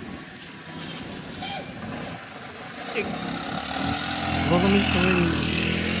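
A motor vehicle engine running close by. About halfway through it comes in as a steady low hum and grows louder.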